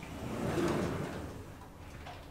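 Schindler 3300 elevator's automatic sliding doors opening, a sliding rumble that builds and fades over about a second and a half.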